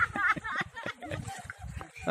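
High-pitched voices talking and calling, fading in the second half, over low splashing and sloshing of water around people wading in a pool.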